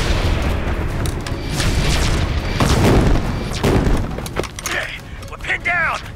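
Battle sound effects: heavy, low explosions for the first four seconds, then several quick falling-pitch blaster zaps near the end.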